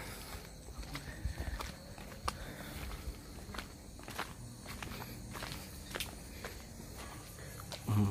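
Footsteps of people walking along a garden path: short, uneven steps, a few each second, over a faint steady background.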